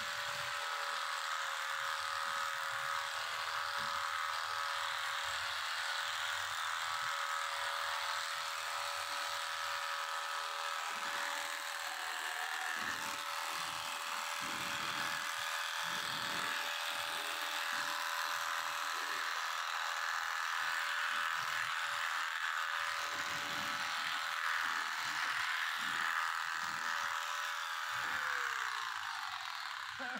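Handheld electric clipper running steadily as it clips the hair of a cow's tail switch, its motor winding down and stopping near the end.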